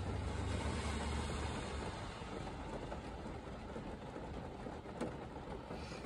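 A steady low rumble of background noise that eases off after about two seconds, with a single faint click about five seconds in.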